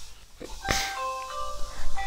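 A short electronic tune of clear, steady tones, several notes overlapping one after another, starting a little before a second in, with a brief hiss just before it.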